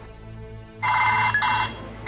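Mobile phone ringtone for an incoming call: an electronic ring starting about a second in, in two short bursts.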